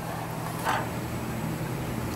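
Steady low machinery hum with a faint hiss, and one brief soft sound about two-thirds of a second in.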